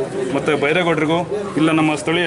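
A man speaking steadily in Kannada into a handheld interview microphone.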